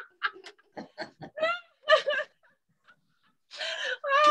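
A woman and a young girl laughing in short, choppy bursts: deliberate laughter-yoga laughing. The laughter stops for about a second, then starts again louder near the end.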